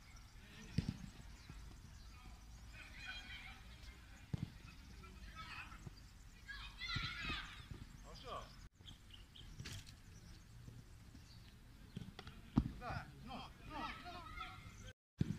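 A football kicked during goalkeeper drills: a few sharp thumps of boot on ball, about a second in, around four seconds and near the end, with calling voices between them.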